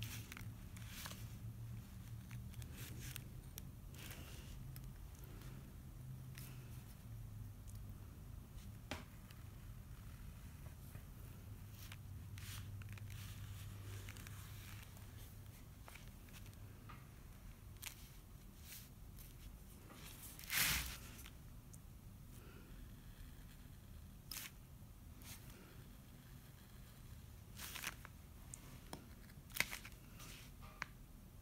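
X-Acto knife blade cutting through a paper pattern and sandblast resist laid on glass: faint scratching and scraping with scattered light clicks, and one louder brief scrape about two-thirds of the way through. A low steady hum lies under the first half.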